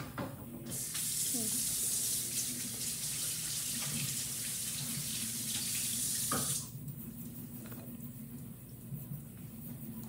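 Water running from a kitchen tap into the sink: a steady hiss that starts about a second in and cuts off abruptly after about six seconds.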